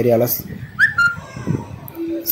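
A short whistle-like chirp about a second in: one quick rising note, then a brief steady higher note. A man's speech trails off just before it.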